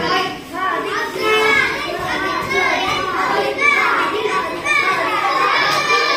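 Many children's voices overlapping, chattering and calling out together in a classroom.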